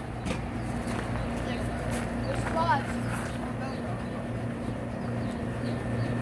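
A steady low motor hum runs throughout. Brief faint voices come in about halfway through.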